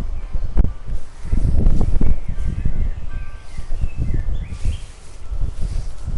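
Low, uneven rumbling of wind and handling on the camera microphone, with a few bird chirps about halfway through.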